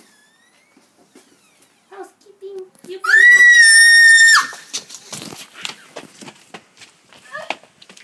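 A person screaming: one loud, high-pitched scream of about a second and a half, held on one pitch and cut off suddenly, about three seconds in. A flurry of quick knocks and scuffling follows.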